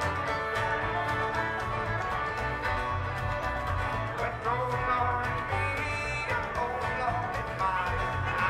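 Live bluegrass string band playing: upright bass keeping a steady low pulse under fiddle, strummed acoustic guitar and banjo.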